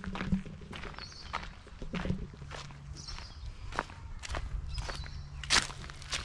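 Footsteps walking over dry leaf litter and dirt, about two crunching steps a second.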